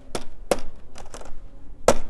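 A few sharp taps of fingers hitting a laptop's keyboard, spaced irregularly, the loudest near the end.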